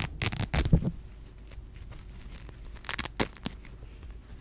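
Velcro (hook-and-loop fastener) on the back of a shirt being ripped open, a ripping rasp in the first second and another around three seconds in.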